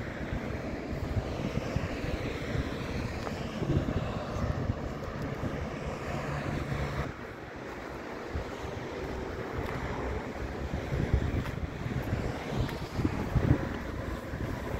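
Wind buffeting the microphone over the rumble of road traffic going by. A steady engine hum runs for a few seconds in the middle and cuts off suddenly about seven seconds in.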